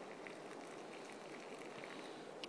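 Boiled water poured from a backpacking pot into a cup of dehydrated beans: a steady quiet trickle with faint fizzing and ticking as the beans froth.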